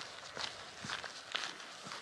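Faint footsteps of a person walking along a hiking trail, about two steps a second.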